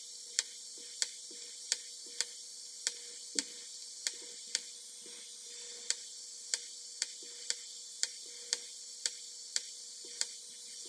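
LUBEX Glow 6 A+ IPL hair removal handset firing its light pulses against the face, a sharp click with each flash about twice a second, with a short pause about halfway through. A faint steady hum runs underneath.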